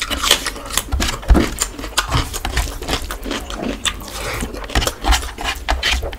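Close-miked chewing and lip smacking from a mouthful of khichuri and chicken: a fast, irregular run of wet clicks and smacks.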